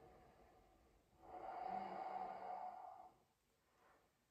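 One slow, audible breath from a person holding a yoga pose, about two seconds long and centred in the middle; otherwise near silence.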